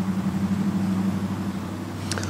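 A steady low droning hum that fades slightly toward the end.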